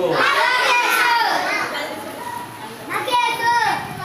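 Several children's voices speaking and calling out loudly, with a lull in the middle and a fresh burst of voices about three seconds in.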